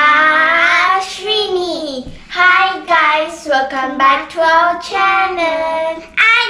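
Children's voices singing together: a long held opening note that slides down, then a run of short sung syllables.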